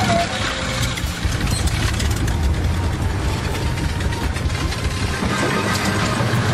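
Engine of an old, battered biplane running with a rough, rapid mechanical clatter as the propeller turns.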